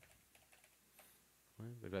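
Computer keyboard typing: a few faint, quick keystrokes as a short word is typed.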